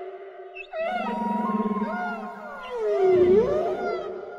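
Whale song: long moaning calls that swoop down and back up in pitch, with higher squeaky glides over a steady low hum. The loudest call is a deep, falling-then-rising moan about three seconds in.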